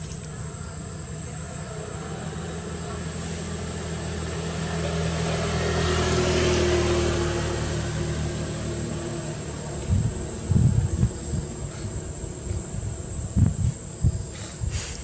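A motor vehicle passing: a low engine hum swells to its loudest about six to seven seconds in, falling a little in pitch, then fades. Irregular low thumps follow from about ten seconds in, over a steady high insect whine.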